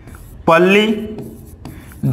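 Marker pen writing on a board: faint rubbing and light tapping strokes. About half a second in, a man's voice utters a short drawn-out syllable that is louder than the writing.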